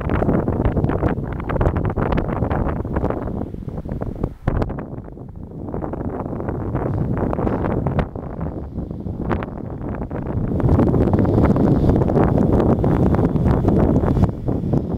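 Wind buffeting the camera microphone in loud, gusty rumbles that swamp other sound, easing for a couple of seconds midway and growing heavier again from about ten seconds in.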